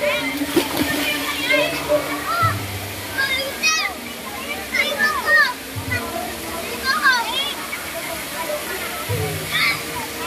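Many voices of bathers, with children calling and shouting in short high cries, over the steady rush of a small waterfall pouring into a shallow pool, with some splashing.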